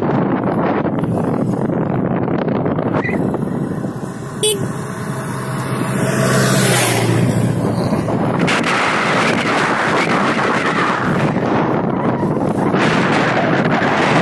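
Wind buffeting the microphone on a moving motorcycle, with road and engine noise beneath, and a sharp knock about four and a half seconds in.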